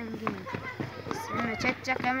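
Speech only: a boy talking in Kyrgyz.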